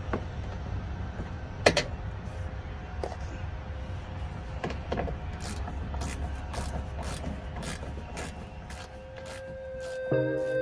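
Hand-held Torx screwdriver working the screws of a plastic mud flap in a truck's wheel well: scattered clicks and taps of the tool and the flap, the sharpest about two seconds in, over a low steady rumble. Music fades in near the end.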